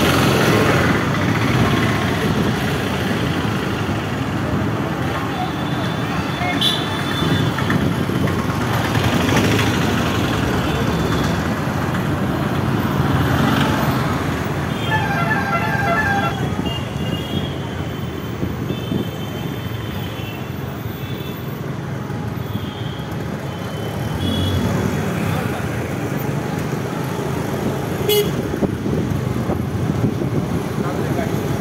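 Busy street traffic heard from a moving two-wheeler: a steady mix of engine and road noise from scooters and auto-rickshaws, with a vehicle horn sounding a run of short quick beeps around the middle.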